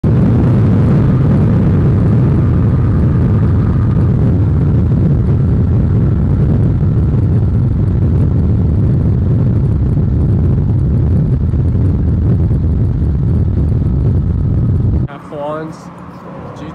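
Steady, loud rumble of wind and road noise from a car moving at highway speed. It cuts off abruptly near the end.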